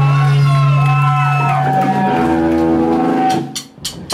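Live rock band's electric guitar and amplifier sounds: a steady low drone with sliding, wavering pitched tones over it, then a sudden drop-out with a few clicks near the end.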